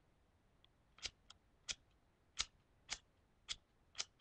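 Harley-Davidson Zippo lighter's flint wheel struck about seven times in quick succession, starting about a second in, giving short sharp clicks. The lighter is out of fluid, so it throws sparks but does not light.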